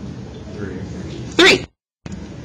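A short, loud vocal burst from a person about one and a half seconds in, over a low murmur of faint voices.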